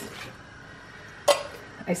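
Green beans sliding softly out of a tin can into a saucepan, then one sharp metallic knock a little past halfway as the emptied can is knocked against the pot, with a lighter tap just before the end.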